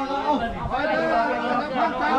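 Several men's voices talking and calling out over one another, overlapping chatter with no clear single speaker.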